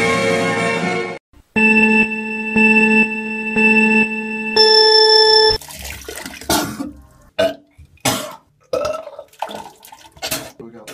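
Orchestral string music stops about a second in, followed by about four seconds of steady electronic tones that pulse about once a second and step up in pitch near the end. From about six seconds in, a man retches into a toilet bowl in a string of short gagging heaves.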